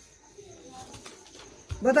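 Mostly quiet room tone for well over a second. Then a person's voice starts speaking loudly near the end.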